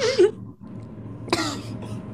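Two short coughs from a person, the first right at the start with a falling pitch and a louder one about a second later.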